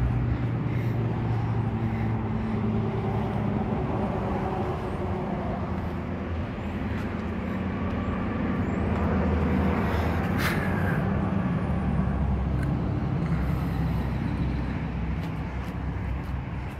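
Steady low mechanical hum of an engine or motor running, over outdoor background noise, with a single sharp click about ten and a half seconds in.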